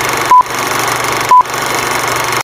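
Old-film countdown leader sound effect: a steady hiss of film noise with a short, loud beep marking each second, heard twice about a second apart.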